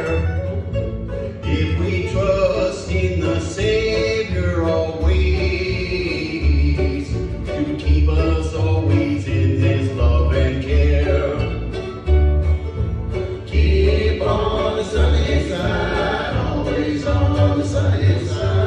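Bluegrass band playing and singing: an upright bass plucks a steady pulsing beat under mandolin and other acoustic strings, with men's voices singing in harmony.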